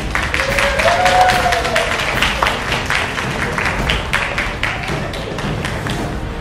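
A small audience clapping and applauding, many quick claps, with a short cheer about a second in.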